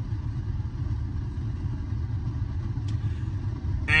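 Low, steady rumble of a car idling, heard from inside the cabin.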